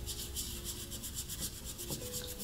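Wooden-backed nail brush scrubbing a potato's skin in quick, regular back-and-forth strokes.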